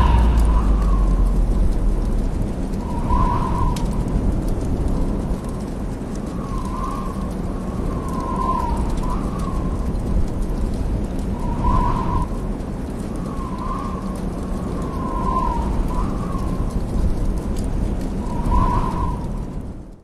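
Low steady rumbling ambience with short bird calls repeating irregularly every one to three seconds, fading out at the end.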